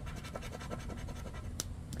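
Poker-chip scratcher scraping the latex coating off a paper scratch-off lottery ticket (Florida Lottery's $5 The Game of Life) in quick, short, repeated strokes, with one sharper tick near the end.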